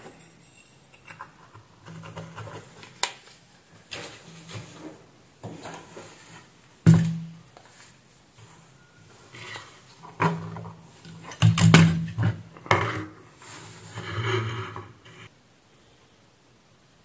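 Bench handling noise: a run of knocks, clicks and rubbing as multimeter test leads and a circuit board are moved about on a workbench. The loudest knocks come about seven seconds in and around twelve seconds in.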